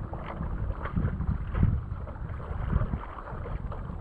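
Wind buffeting the camera microphone as a low rumble, with water lapping and splashing against a stand-up paddleboard in short irregular surges.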